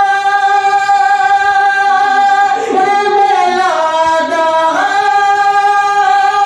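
A man singing a naat unaccompanied into a microphone. He holds one long high note for about two and a half seconds, then slides through ornamented turns that dip down in pitch and climb back up.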